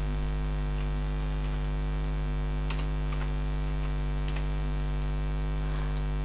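Steady electrical mains hum with a stack of overtones, at an even level, with a few faint clicks of computer keys being typed.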